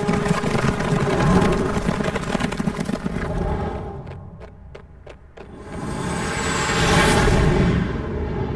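Film soundtrack mix: a dense rumbling noise, then a quieter stretch with a few sharp clicks, then a swelling whoosh that peaks near the end.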